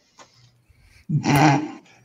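A man laughing: one short burst about a second in.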